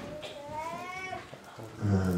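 A single drawn-out, high-pitched animal call, about a second long, rising slightly and then dropping at its end.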